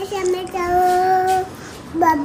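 A small girl's voice drawing out one long, steady, high sing-song note for about a second, after a brief short note at the start.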